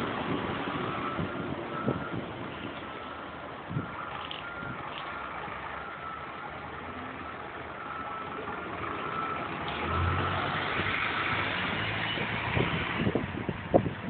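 Diesel single-deck buses running as they manoeuvre at low speed, a steady engine sound with a faint whine coming and going. About ten seconds in, an approaching bus's engine grows louder for a few seconds, then drops away.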